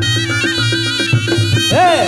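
Reog gamelan music: a slompret (double-reed shawm) playing a high, held melody over kendang drums and gongs keeping a steady beat.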